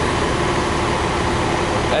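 Steady city street noise of traffic running by: a low rumble under an even hiss.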